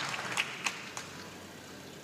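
A few scattered handclaps as applause dies away, then quiet hall ambience.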